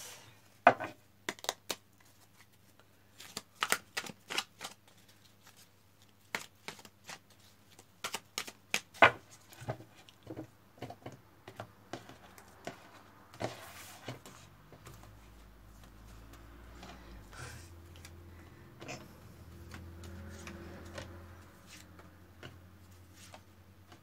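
Tarot cards being shuffled, cut and laid down on a wooden tabletop: an irregular string of sharp taps and clicks. A faint low hum comes in about midway.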